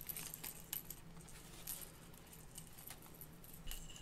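Faint, scattered clicks and light jingling from a catfish rattle rig and its metal terminal tackle (hooks, swivel, beads) knocking together as the rig is handled and wound onto a foam holder.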